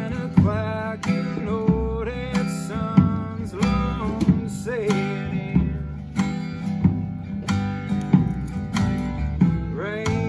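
A small acoustic band playing live: strummed acoustic guitar over upright bass and a drum kit keeping a steady beat, with a wavering sung melody on top.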